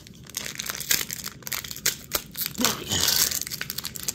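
Thin clear plastic blind bag crinkling and crackling in the fingers as it is worked open, a quick run of small crackles with a louder rustle just before three seconds in.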